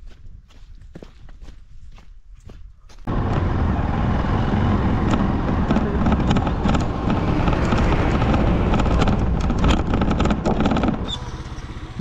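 Quiet outdoor background with a few faint clicks, then about three seconds in a sudden switch to a loud, steady vehicle sound: a bus running on a dirt road, engine and tyres on gravel. It eases off shortly before the end.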